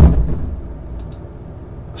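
A loud, heavy bang right at the start that dies away over about half a second, one of a series of bangs from somewhere in the building.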